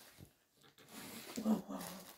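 Faint rustling of a shawl's fabric as it is arranged around the head, then a woman's soft, drawn-out 'wow' about a second and a half in.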